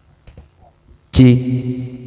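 A man's drawn-out 'cek' mic-check call into a handheld microphone, amplified through a mixer with its effects engaged. It starts suddenly about a second in and holds one steady pitch.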